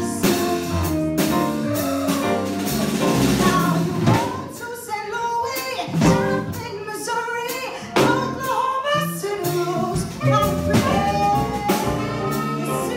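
A woman singing jazz into a microphone, backed by a live combo with upright bass and drum kit; the bass steps from note to note under her voice while the drums keep time with regular cymbal and drum strokes.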